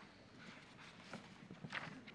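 Faint shuffling and rustling of people getting to their feet and turning pages in prayer books, with a few soft clicks and a slightly louder rustle near the end.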